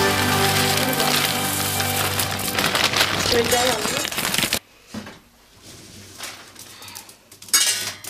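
Wood pellets poured from a plastic sack into a pellet stove's hopper, a dense rattling hiss that stops abruptly about four and a half seconds in, followed by a few light clicks and knocks of handling.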